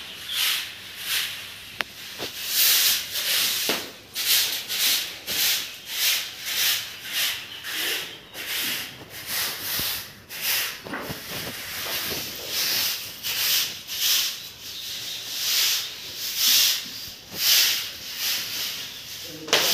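Grass broom sweeping a bare concrete floor gritty with sand: quick, regular dry swishes, a little more than one a second.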